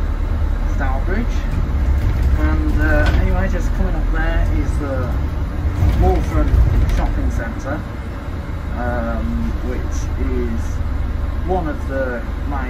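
Steady low rumble of a bus's engine and running gear heard from inside the moving bus, with indistinct voices talking throughout.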